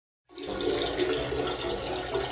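Toilet flushing: a steady rush of water that starts about a third of a second in.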